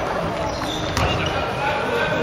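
A basketball bouncing on a wooden gym floor amid the echoing noise of a game in a large hall, with short high squeaks of sneakers on the court and indistinct voices of players.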